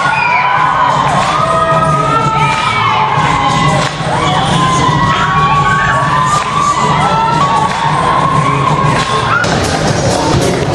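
Audience of teenagers cheering and screaming loudly, many high-pitched voices shrieking and whooping over one another, with music playing underneath.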